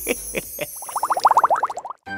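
Cartoon sparkle-transition sound effect: a few quick pops, then a rapid run of short rising chirps, about a dozen in a second, over a faint high shimmer, cutting off just before the next scene.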